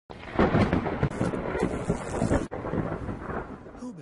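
Thunder rumbling, loudest in the first half, with a sudden brief break about halfway through before the rumble carries on and fades.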